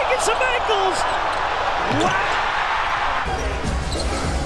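Basketball arena crowd noise from NBA game footage, a steady roar with faint voices rising through it, and a basketball dribbling on the hardwood court.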